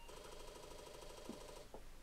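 Apple IIe reboot: a short start-up beep, then the Disk II floppy drive buzzing for about a second and a half as its head steps back against the stop at the start of the boot, ending in a click.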